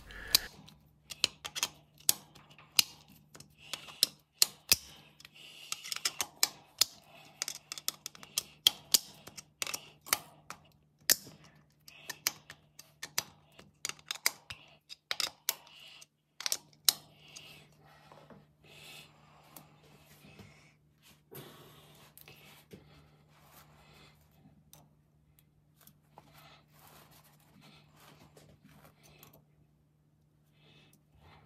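Irregular sharp metallic clicks and taps from a hex key working the stainless cap screws of a lathe collet chuck mount as it is adjusted and tightened to run true. The clicks come thick for the first half and thin out and grow fainter later on, over a steady low hum.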